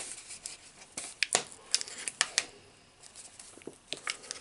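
Fingers picking and scratching at the peel-off foil seal on top of a Pringles can, making a run of sharp clicks and small scratchy tearing sounds that thin out after the middle.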